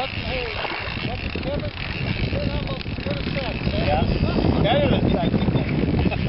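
Low, uneven rumble of wind on the microphone, growing heavier about four seconds in, with faint distant voices under it.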